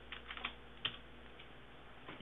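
A handful of faint keystrokes on a computer keyboard in the first second, typing a short name into a file rename box.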